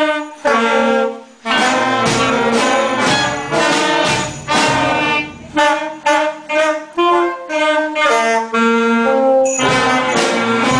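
A student wind band playing a tune, alto saxophones among the instruments. The playing is fuller in the first half, then breaks into short, separate notes.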